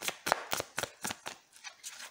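A deck of cards being shuffled by hand: a quick, irregular run of crisp card clicks and slaps.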